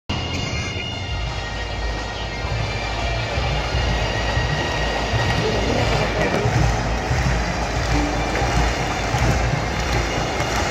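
Live music filling a large arena, picked up on a phone with a heavy low rumble and faint steady high tones.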